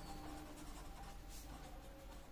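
Faint sound of a pen writing on paper, a run of short strokes as a word is written.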